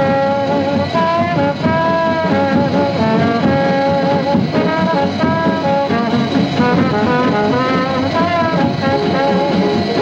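Swing band music for jitterbug dancing, with brass horns playing a melody of short held notes over a steady rhythm section.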